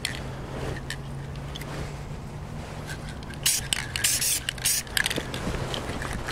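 Aerosol spray-paint can hissing in several short bursts a little past the middle, laying dark green paint on an air rifle's stock, over a steady low hum.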